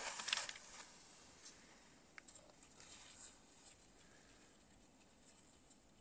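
Cross-country skis sliding over snow and poles planting close by as a skier pushes off downhill. The sound fades within the first second to near quiet, with a few faint crunches after.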